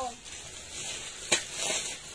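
Plastic packaging crinkling and rustling as bagged clothes are handled and pulled from a stack, with one sharp click about a second and a third in.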